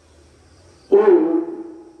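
A man's voice in a sermon chant: one held, sung note that sets in about a second in and trails off.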